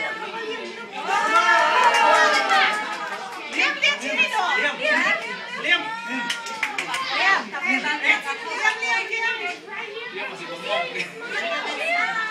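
Small children and adults chattering and calling out over one another, with a louder excited stretch about one to three seconds in.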